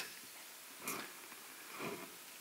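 A quiet pause with two faint breaths from a man picked up by a close headset microphone, one about a second in and one near the end just before he speaks again.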